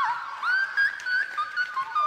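Female singer's voice in the whistle register, live: a high held note slides down at the start, then breaks into a string of quick, short high notes and runs.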